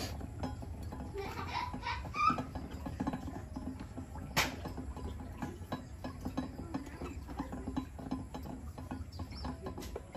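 Metal display turntable turned by hand under a glazed ceramic bonsai pot, with irregular small clicks and rattles and one sharper click about four seconds in.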